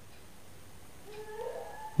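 Faint room tone, then about a second in a short, faint call rising in pitch, like an animal's.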